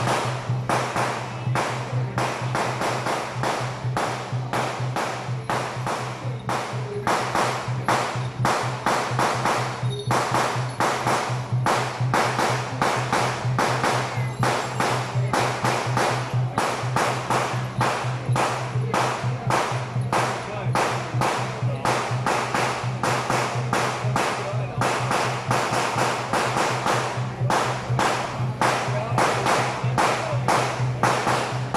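Steady, evenly paced beat of a temple-procession percussion band, drums and cymbals struck about two to three times a second, over a steady low hum.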